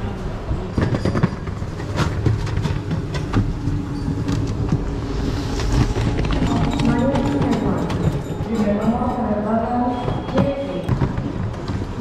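Knocks and clatter of a handheld camera being set down and carried through airport security screening, over a low rumble. From about halfway, people's voices talking nearby.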